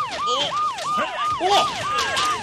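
Siren sound effect in a fast yelp, about three cycles a second, each cycle jumping to a high note, holding it briefly and sliding down. Voices shout "oh!" over it about a second and a half in.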